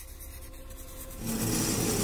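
Pencil scratching across paper, with music swelling in a little over a second in.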